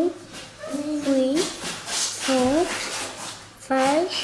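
Speech only: a voice counting aloud, one short number-word about every second.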